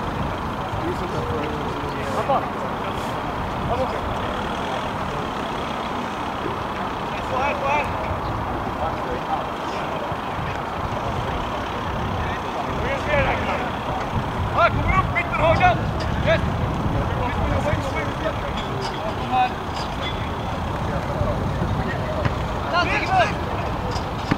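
Players' shouts and calls carrying across an outdoor grass football pitch, in short bursts that come most thickly in the middle and near the end, over a steady low rumble.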